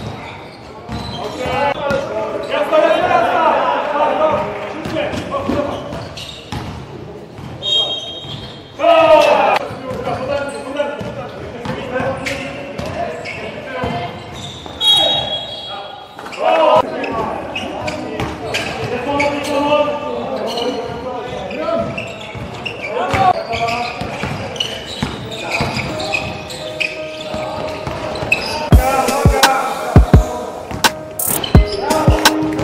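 Basketball game in a gym: a ball bouncing on the court and players' voices calling out, echoing in the hall.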